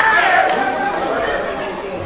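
Several people talking and calling out at once, their voices overlapping.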